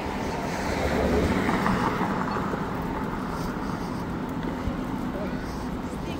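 Busy city street sound: a vehicle passes on the road, swelling to its loudest about a second or two in and then fading, over a steady low traffic rumble and voices of people walking.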